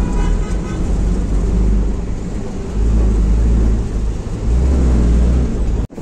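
A passenger bus heard from inside the cabin while on the move: a loud, low engine rumble and road noise, swelling and easing a few times.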